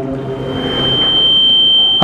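A whoosh sound effect: a noisy swell that grows louder toward the end, with a steady high ringing tone held through it.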